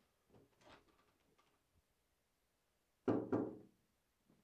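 Two loud knocks on a door in quick succession, about three seconds in.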